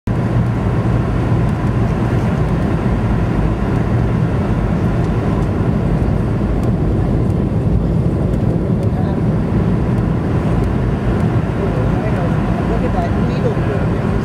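Steady roar of a commercial jet's cabin on approach, the engine and airflow noise heard from inside the passenger cabin. A voice speaks briefly near the end.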